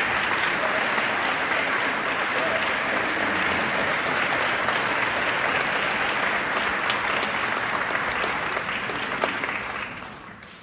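Audience applauding steadily, dying away near the end.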